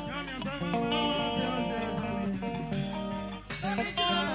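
A live band playing, led by guitar, with a woman singing.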